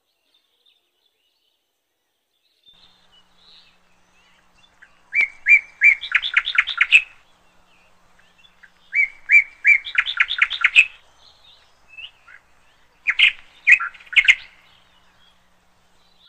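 A bird singing three phrases a few seconds apart, each a few spaced notes running into a quick series of repeated notes. The first few seconds are near silent.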